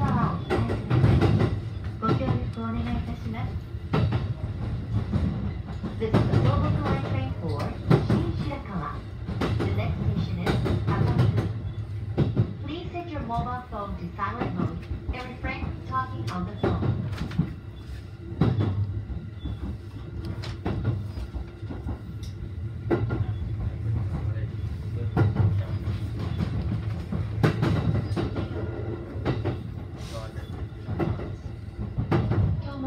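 Electric commuter train running slowly through a station yard, heard inside the front car: a steady low running hum with irregular clicks and knocks as the wheels cross points and rail joints.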